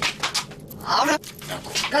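A person's voice making a few short breathy sounds, then a brief voiced sound about a second in.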